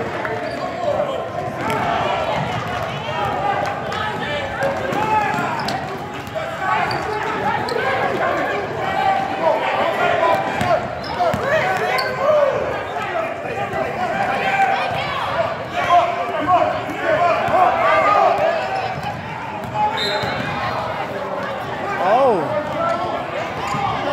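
A basketball being dribbled on a hardwood gym floor, with voices of players and spectators calling out over it.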